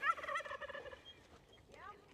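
Turkey gobbling: a faint warbling call in the first second that fades away, with another faint call near the end.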